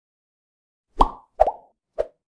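Three short pop sound effects, about half a second apart, starting about a second in.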